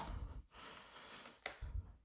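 Hands handling a stack of Pokémon trading cards, moving one card through the stack: a faint sliding rustle, then one sharp card click about a second and a half in.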